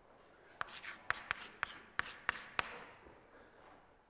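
Chalk writing letters on a blackboard: a quick run of about seven sharp taps and short scrapes over two seconds, starting about half a second in.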